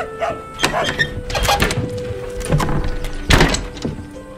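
Boot footsteps on wooden floorboards and a door thudding, the loudest knock about three and a half seconds in, over a music score with a long held note.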